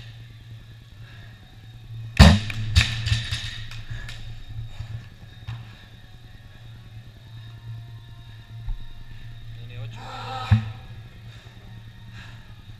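A loaded barbell with bumper plates dropped onto rubber gym flooring about two seconds in: one heavy thud, then a smaller bounce. A low hum runs underneath, and near the end there is a brief voice-like sound with another thud.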